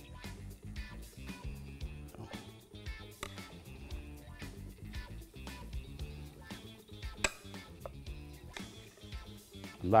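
Background music with steady low notes, over a few light clicks of a ladle against a pancake pan as batter is spooned in.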